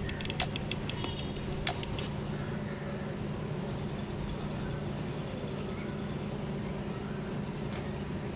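A vehicle engine idling with a steady low hum. A quick run of sharp clicks sounds over the first two seconds.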